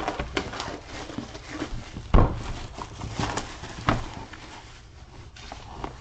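Hands handling a boxed card case: plastic wrap rustling as it is pulled off, and the outer sleeve sliding off the case, with a few sharp knocks about two, three and four seconds in.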